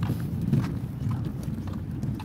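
Rollator walker's small front wheels rolling over a walkway with a steady low rumble, with light knocks about twice a second.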